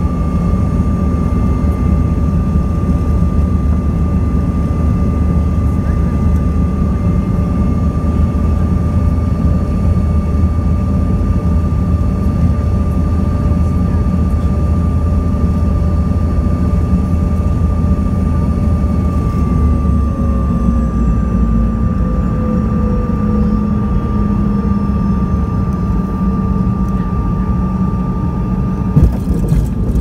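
Inside the cabin of a jet airliner on final approach: steady jet engine drone and airflow noise, with the engine tones falling in pitch about two-thirds of the way through as power comes back. A few sharp knocks near the end as the wheels touch down on the runway.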